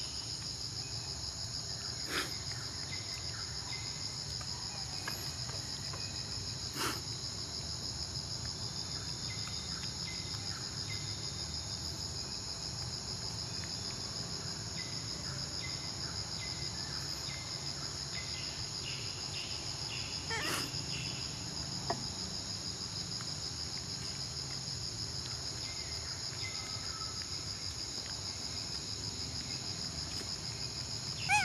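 Steady chorus of insects, a continuous high-pitched buzz that never lets up, with a few short clicks about 2, 7 and 20 seconds in.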